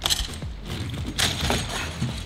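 Scooter fitted with over a hundred small wheels on two long axles being shoved across a plywood ramp: the rows of wheels roll, rattle and scrape on the wood in short bursts, at the start and again about a second in.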